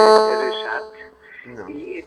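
A loud buzzing electronic chord, pulsing rapidly, fades out within the first second, followed by quieter talk.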